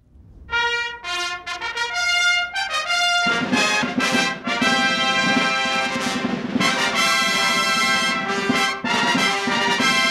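Fanfare on long herald trumpets, starting about half a second in with short, separate notes, then swelling about three seconds in into a fuller, sustained brass passage with lower brass added beneath.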